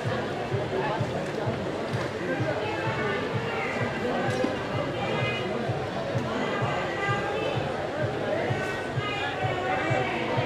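Indistinct voices mixed with music, steady throughout.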